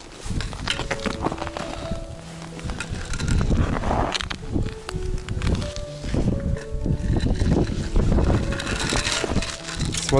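Footsteps on snow-covered ice with wind buffeting the microphone, over background music with short held notes.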